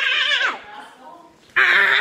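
A child's high-pitched screams with a wobbling pitch: one trails off and falls away about half a second in, and a second loud one breaks out about a second and a half in.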